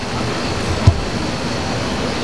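Steady city street noise, an even roar of traffic, with one short low thump about a second in.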